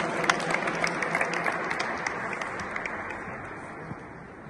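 Applause from the audience and performers, the clapping thinning out and fading away over the few seconds.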